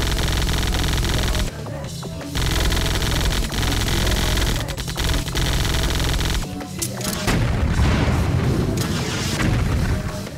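Video game automatic rifle firing in repeated bursts of rapid shots with short pauses between them, over a music score.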